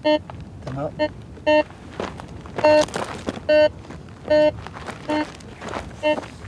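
Metal detector beeping: seven short beeps of one steady pitch, about one every 0.8 seconds, one held a little longer near the middle. The detector is signalling a metal target under its search coil, as it does over an iron meteorite.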